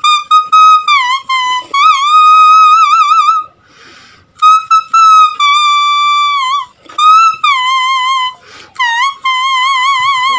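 A tune played on a green leaf held to the lips: a high, reedy whistling tone with a wavering vibrato, sliding between notes in short phrases. There is a short break for breath about three and a half seconds in.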